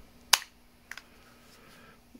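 A sharp plastic click about a third of a second in, then a fainter click near the middle, from a handheld ham radio being handled.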